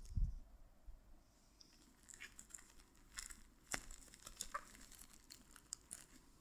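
Plastic parcel wrapping crinkling and tearing as fingers pick at it, heard as scattered faint crackles and clicks. There is a low thump just after the start.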